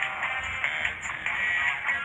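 Music playing, with held melodic notes.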